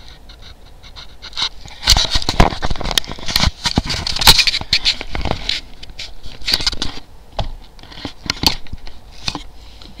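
Irregular scraping, rustling and sharp knocking from things being handled right at the microphone, densest in the first half and thinning out toward the end.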